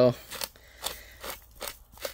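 Pepper grinder cracking peppercorns in a series of short, irregular crunchy clicks as it is twisted over the steaks.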